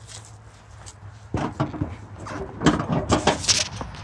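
Irregular clunks, knocks and rustling starting about a second in, as a person climbs onto the seat of a garden tractor that is not running.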